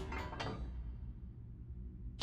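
Cartoon robot mechanism sound effects: a few quick mechanical clicks as arm-mounted guns are raised, followed by a low steady rumble.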